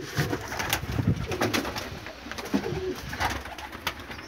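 Domestic pigeons cooing inside a loft, with a few sharp clicks.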